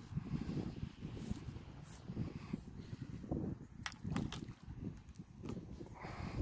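Faint low rustling and handling noise from a phone camera being moved and fitted into a head strap, with a few sharp clicks about two, four and five and a half seconds in.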